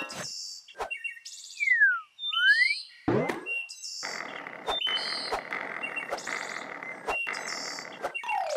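Cartoon sound effects over birds chirping: a whistle-like glide that falls then rises, then a quick upward sweep. From about four seconds in, the steady rolling noise of toy roller-skate wheels, with small ticks.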